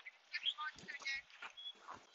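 A faint, distant voice calling out across open ground, "Hey Gen, you're such a monster, Gen."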